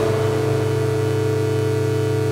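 Experimental electronic music: a held, unchanging synthesizer drone made of many stacked tones over a steady low bass note, with a hiss on top and no drum beat.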